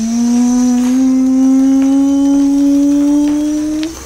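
A child's voice holding one long, steady note that slowly rises in pitch and stops just before the end, a vocal sound effect made during play.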